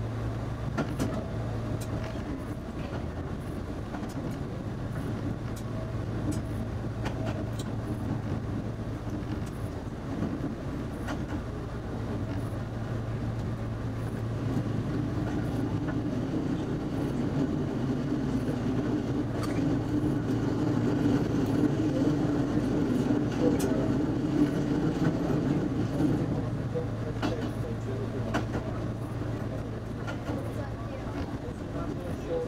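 Diesel railcar running along the line: a steady engine drone with scattered clicks. About halfway in the engine note gets higher and louder, then eases off near the end.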